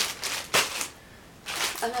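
Clear plastic packaging crinkling and rustling as it is handled, with the loudest rustle about half a second in, a short lull, then more crinkling.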